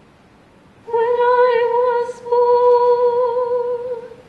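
A high voice humming two long held notes at the same pitch with a slight waver, the first starting about a second in and the second following a brief break just after two seconds.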